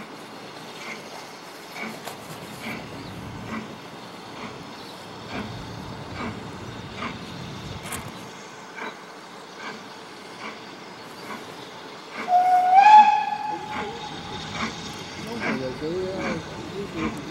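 Distant steam locomotive approaching, its exhaust beats coming a little faster than once a second. About twelve seconds in, the loudest sound: a single steam whistle blast of about a second and a half.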